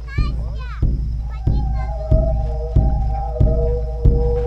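Air pump worked in regular strokes, a low thump about every two-thirds of a second, pumping air into something to inflate it.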